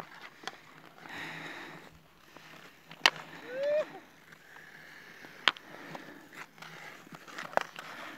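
Thin black ice on a frozen mountain lake cracking and singing under skaters: sharp cracks, the loudest about three, five and a half and seven and a half seconds in, the first followed by a short whistling, laser-like ping. A soft hiss of skate blades gliding about a second in.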